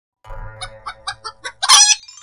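Chicken clucking: a run of about six short clucks, then a louder, longer squawk near the end.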